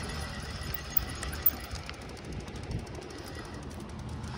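Ride noise from a road bicycle on asphalt: wind on the microphone and a low tyre rumble, with a run of faint rapid ticks and one sharp click about one and a half seconds in.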